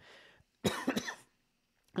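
A man's single short cough, about half a second in.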